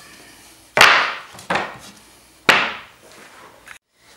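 Sharp knocks of plywood pieces handled on a workbench: a loud one about a second in, a lighter one just after, and another a second later, each ringing briefly.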